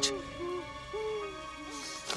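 A woman's stifled whimpers, muffled by a hand held over her mouth: several short moans that rise and fall in pitch, over sustained music.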